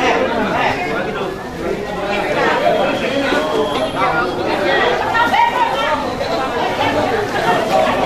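Several people talking over one another close by: steady crowd chatter.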